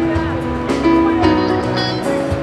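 Live band music: a song played on drum kit and electric bass, with a male singer's voice over held notes.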